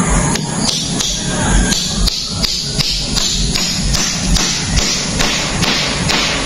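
Claw hammer driving a nail into a wooden roof rafter, with about three blows a second in a steady run.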